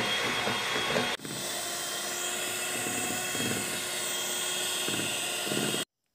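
Electric hand mixer running at a steady whine, its beaters whipping cream. The sound breaks off for a moment about a second in, runs on, and stops suddenly near the end.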